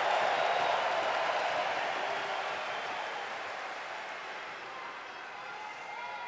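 Large arena crowd applauding and cheering, the sound fading gradually over several seconds.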